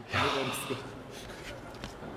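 A man's short, breathy vocal sound, a gasp-like exhalation, near the start, then faint room sound.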